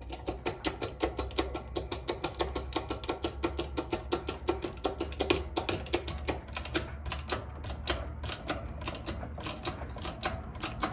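Hand-operated steel-frame bench press being worked down onto a coin ring folding die: a steady run of ratcheting clicks, about four a second, as the ram pushes the taped copper blank down into the Swedish wrap die.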